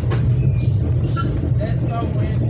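Steady low rumble of a Metra Rock Island commuter train running, heard from inside the passenger car, with faint voices in the background.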